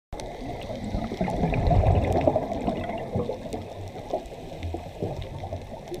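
Muffled underwater ambience: a low, gurgling rumble of moving water that swells about two seconds in and then eases off, with faint scattered clicks.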